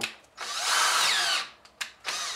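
Cordless drill boring into a Turbo 400 transmission pump to open up a hole: one run of about a second, its whine shifting in pitch as the bit cuts, followed by a couple of sharp clicks.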